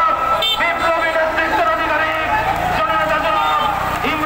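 A man's voice speaking continuously, with street traffic noise underneath.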